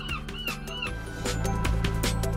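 Seagulls calling in a fast run of short rising-and-falling cries, about four a second, over background music. The calls stop just under a second in, leaving only the music.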